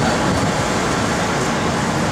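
Steady traffic noise of a busy city street, an even wash of sound with no single event standing out.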